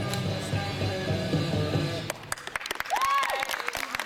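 Floor-exercise music playing, which stops about halfway through; then scattered clapping from spectators and one cheering shout as the gymnast finishes.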